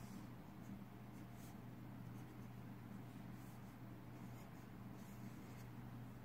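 Marker pen drawing on paper: faint, short scratchy strokes as circles and lines are drawn, over a steady low hum.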